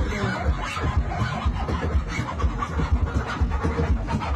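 Loud DJ party music with a heavy bass line, with scratch effects worked on a handheld DJ controller.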